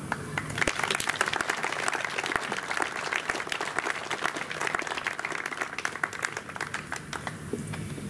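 Audience applauding: many hands clapping in a dense, irregular patter that thins a little toward the end.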